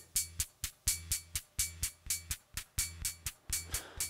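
Modular-synth hi-hat playing a fast sixteenth-note pattern over a low steady tone. Every second hit is sent through a trigger delay, and the delay is turned up here, so the hits fall into uneven pairs and the straight rhythm takes on a swing.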